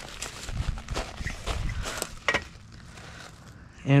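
Crunching and shuffling on loose crushed-stone chipstone, with a few light knocks as a long level is handled on the steel screed pipes.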